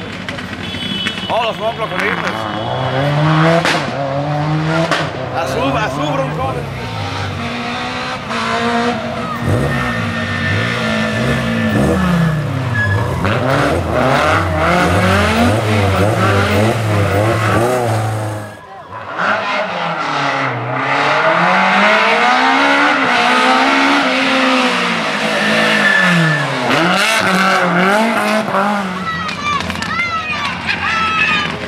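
Rally car engines at racing speed, their pitch climbing and dropping again and again as the drivers shift gears and lift off and back on the throttle. There is a brief dip about eighteen seconds in, then another car's engine takes over.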